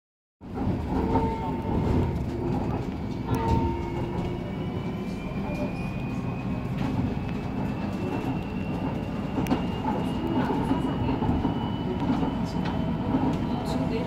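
Inside a Busan–Gimhae Light Rail train car running along its elevated track: a steady rumble of the running gear, with a thin whine that rises slowly in pitch.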